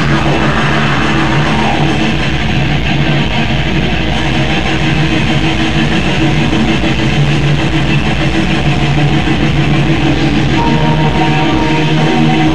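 A black metal band playing live: distorted electric guitars hold sustained notes over a fast, steady drum beat, loud and dense throughout.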